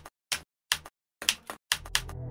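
Typing sound effect: separate keystrokes clicking at an uneven pace, about seven in two seconds, each a quick double click, as text is typed out. Near the end a soft ambient music pad comes in under the last keystrokes.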